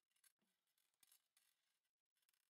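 Near silence, with faint, irregular scratching and rustling from hands handling a craft piece.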